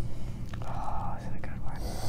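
Low steady room hum with soft, breathy, whisper-like vocal sounds from a person pausing to think: one about halfway through and a hiss of breath near the end.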